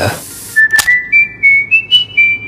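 Old Spice's whistled sound logo: a quick run of about seven clear whistled notes that climb in pitch and drop on the last, with a single sharp click just before the second note.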